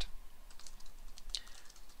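Typing on a computer keyboard: an uneven run of quick key clicks.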